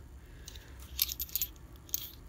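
Fired 7x57mm brass cartridge cases clinking together as they are shifted around in a hand: a few light, sharp metallic clinks, mostly in the second half.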